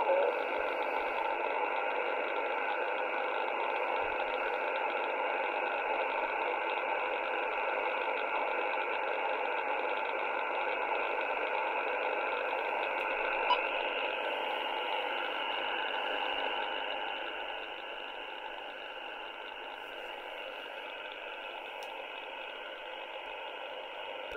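Icom IC-R75 shortwave receiver in upper-sideband mode on an empty HF channel: a steady hiss of band static and noise in the narrow voice passband, with no signal on the frequency. The hiss drops somewhat in level about two-thirds of the way through.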